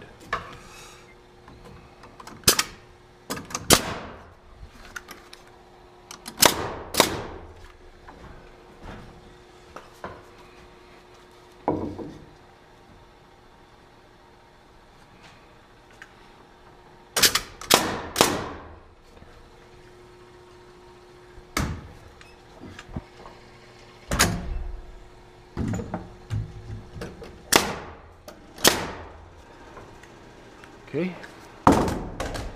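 Cordless framing nailer firing nails into lumber: about a dozen sharp bangs spaced irregularly, with a quick run of four about halfway through, mixed with knocks of wood being set in place.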